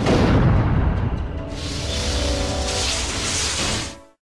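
Cartoon explosion sound effect: a sudden boom with a deep rumble, joined about a second and a half in by a loud rushing hiss, cutting off suddenly near the end.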